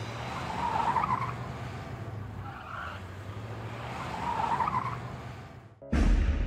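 Cars moving in a car park: a low steady engine hum with tyre noise on paving that swells twice, about a second in and again about four and a half seconds in. It cuts off suddenly just before the end.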